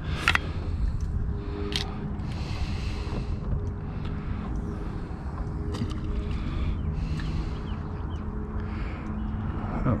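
Wind rumbling on the microphone over open water, with a faint steady motor hum underneath and a few light knocks.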